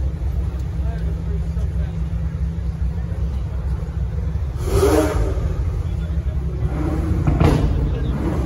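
Supercar engine running with a steady low rumble, blipped in short revs about five seconds in and again near the end, with people talking around it.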